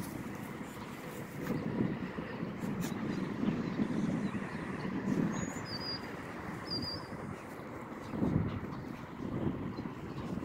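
Low rumbling outdoor noise that swells and fades, typical of wind buffeting a phone microphone. Two faint, short, high chirps come near the middle.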